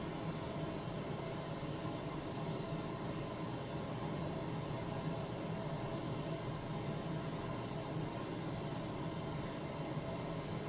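Steady, unchanging machine hum in the room, with no other events.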